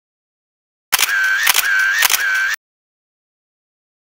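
Camera shutter sound effect: three sharp shutter clicks about half a second apart, each followed by a short whirring tone, all within about a second and a half.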